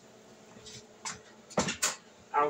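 Two short, sharp knocks in quick succession about a second and a half in, over a faint steady kitchen hum.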